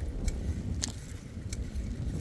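Bicycle riding over asphalt: a steady low rumble of tyres and wind, with three short sharp clicks or rattles about half a second to a second apart.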